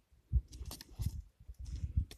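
Steel KP-320 body-grip trap and its wooden pole knocking and scraping against the ice as they are hauled up through the ice hole, with crunching of ice and slush; irregular dull knocks, the loudest about a third of a second in and again at about one second.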